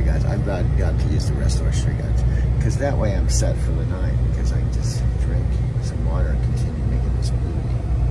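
Semi-truck's diesel engine running with a steady low rumble, heard inside the cab, with indistinct voice sounds over it a few times.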